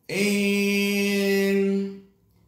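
A man's voice holding a single sung note at one steady pitch, loud, for nearly two seconds before it fades off.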